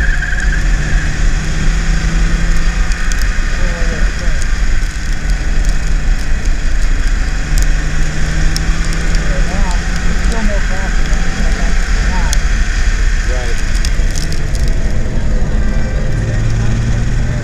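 BMW E36 328is straight-six engine running at steady part throttle at about 45–50 mph, heard from inside the cabin over a heavy rumble of road and wind noise. Faint crackling ticks come and go over the top.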